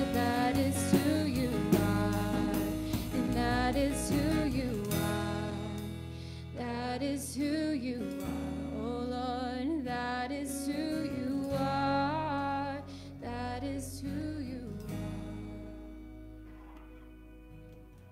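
Live worship band (drum kit, electric bass, acoustic guitar) playing under a woman singing long, wavering notes. The band drops back about five seconds in, and the music fades away over the last few seconds.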